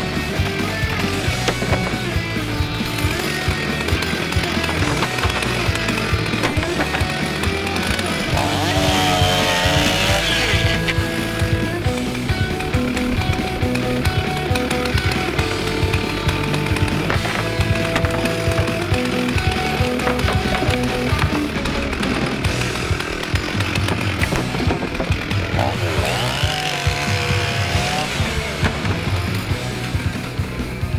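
Gas chainsaw running and cutting up a wooden table, its engine revving up and back down twice, with music playing over it.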